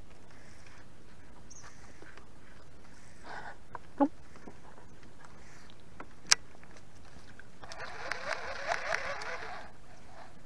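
Fishing rod and baitcasting reel being handled: a sharp click a little past six seconds, then about two seconds of rasping whir near the end as the reel and line are worked, over a steady hiss.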